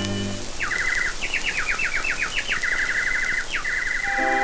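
Bird-like chirping and warbling in a break in the string music: quick repeated chirps, then a run of fast downward-sweeping notes, then a long rapid trill that carries on to the end.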